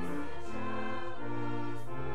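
Slow church hymn music in sustained chords, each chord held for about half a second to a second before moving to the next.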